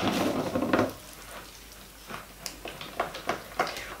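Silicone spatula scraping and stirring thick, fast-thickening cold process soap batter in a plastic mixing bowl. A dense scrape runs for about the first second, then it goes quieter, with a few short scrapes and knocks near the end.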